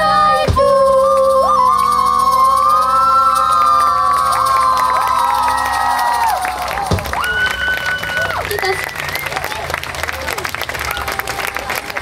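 A live rock band ends a song: last drum hits, then long held sung notes over the instruments. As the music stops in the second half, the audience cheers and applauds.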